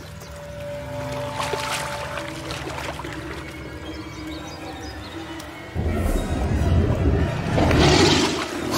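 Film soundtrack music with long held notes, joined about six seconds in by a sudden loud noisy surge, heaviest in the bass, that carries on to the end.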